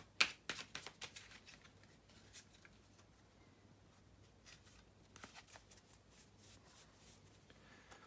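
A deck of tarot cards shuffled by hand: faint, quick clicks and slaps of cards against each other, densest in the first second, with a second flurry about five seconds in.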